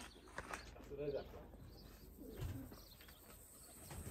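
Faint pigeon cooing in a quiet open-air setting, a few short low calls about a second in and again after two seconds.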